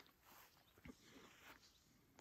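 Near silence: faint outdoor quiet with a couple of brief, faint clicks.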